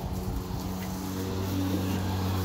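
Lawn mower engine running steadily, heard as a low hum that firms up slightly about one and a half seconds in. Some brief handling rustle in the first half second.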